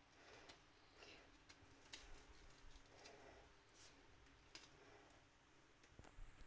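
Very faint scattered soft clicks and scrapes of a metal spoon spreading tomato sauce over raw pizza dough rounds on a parchment-lined baking tray.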